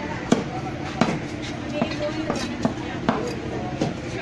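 A large knife chopping through fish onto a wooden chopping block: a series of sharp knocks, roughly two a second, the first the loudest.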